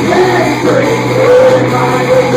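A live rock band playing loud, with electric guitars and drums under a man's singing.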